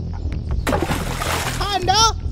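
A cartoon water splash, a short burst about two thirds of a second in, over steady background music; a child's voice starts speaking near the end.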